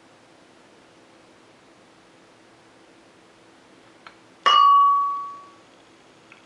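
A light click, then one sharp glass clink about four and a half seconds in, ringing on a clear tone and dying away over about a second, as glassware is knocked while molasses is measured out. Otherwise a faint steady room hum.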